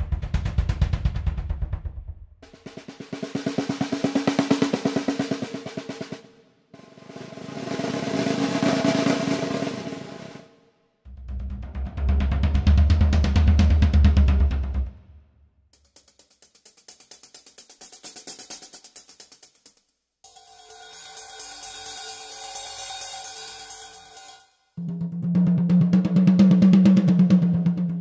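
Sampled drum kit played one piece at a time in short passages of fast, evenly repeated strokes, about seven passages of three to four seconds each. Low, heavy drum passages and mid drum passages alternate with two in the middle that are all high-pitched hi-hat and cymbal strokes.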